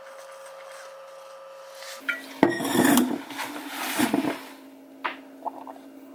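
A person drinking from a water bottle. About two seconds in there are a couple of seconds of gulping and bottle-handling noise, over a faint steady hum.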